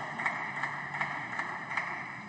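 Room noise of a large hall, heard through the microphones, with a few faint, irregular taps.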